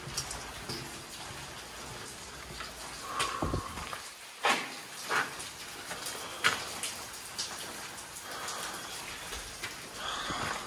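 Steady rain heard from inside a concrete building, with a few scattered sharp taps.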